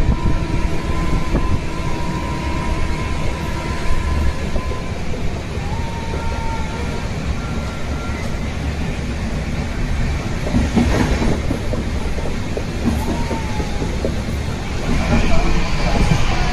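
Running noise of a moving passenger train heard from inside the coach: a steady rumble of wheels on the rails and car body, with a brief clatter about eleven seconds in.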